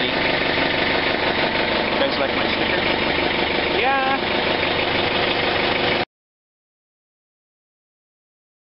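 John Deere 110 TLB backhoe loader's diesel engine running steadily at idle, heard from the operator's seat. The sound cuts off suddenly about six seconds in.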